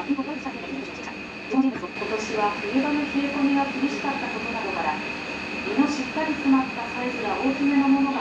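Background voice from a television news broadcast, with a steady high-pitched whine throughout and a few faint clicks.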